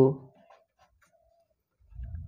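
A marker pen writing on paper: faint, short scratches of the pen strokes. Near the end comes a low, rough rubbing as the hand slides across the sheet.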